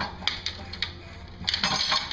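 Steel trunnion spring bars of a weight-distribution hitch being handled, giving a series of sharp metal clinks and clanks, thickest near the end.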